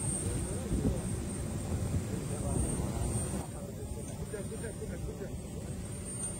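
Steady aircraft noise from a parked airliner, with several people's voices talking underneath and a thin high whine. The upper rushing part of the noise drops away about halfway through.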